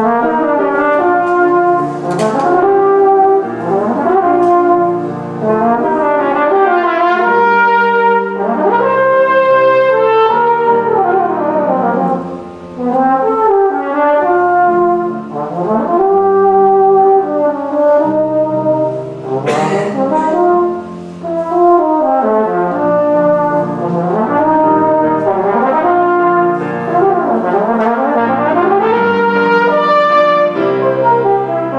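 E-flat tenor horn playing a solo melody with fast runs that sweep up and down between held notes, with piano accompaniment underneath.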